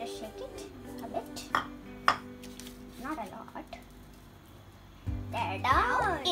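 A few sharp clinks of ceramic bowls being handled, the loudest about two seconds in, over background music with held notes. Near the end, louder children's-style music with a voice comes in.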